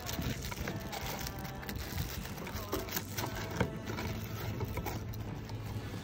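Scissors cutting away excess plastic wrap from around a plastic container: scattered short snips and rustling of the film, over a low steady hum.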